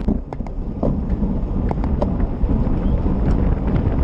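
Wind buffeting a bike-mounted action camera's microphone at about 30 mph, a steady low rumble, with a few short sharp clicks scattered through it.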